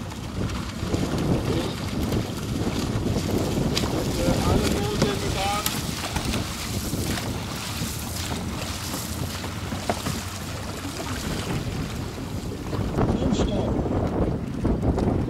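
Wind buffeting the microphone in a steady low rumble, with a few short clicks or knocks over it and some brief pitched calls about four to six seconds in.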